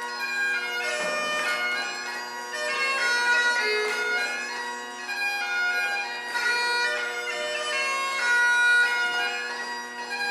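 Great Highland bagpipes playing a dance tune: a melody over steady, unchanging drones.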